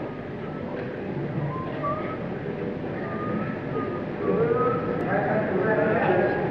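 Hissy live concert recording: short, wavering sustained instrument notes over a murmuring crowd, growing louder and fuller about four seconds in as the band's intro to the song builds.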